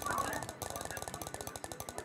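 Online spinner-wheel app ticking in a fast, even run as the spun wheel turns past its segments.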